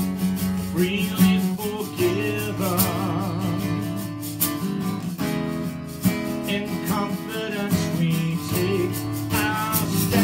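Acoustic guitar strummed steadily, with a man singing a song over it.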